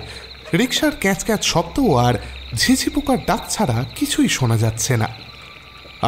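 Frogs croaking in repeated calls over a steady chirring of crickets, a night-time ambience.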